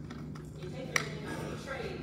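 Voices talking in a meeting hall, with a single sharp clink about a second in, and a steady low hum throughout.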